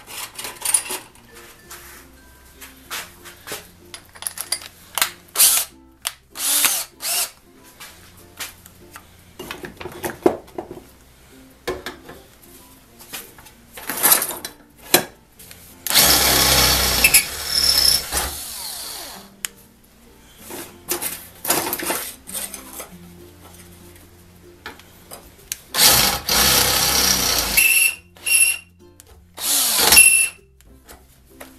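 DeWalt 18V cordless drill boring holes through steel plate, its motor run in stop-start bursts, with the longest runs about halfway through and near the end. Background music plays faintly underneath.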